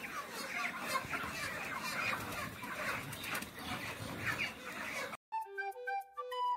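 A large flock of broiler chickens clucking and calling at once, a dense, continuous chatter of many overlapping short calls. Near the end it cuts off abruptly and a flute-like melody begins.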